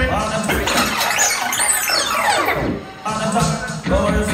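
A record rewound on a sound-system deck. The music's pitch sweeps up into a high squeal and back down over about two and a half seconds while the bass drops out. The track then starts again near the end.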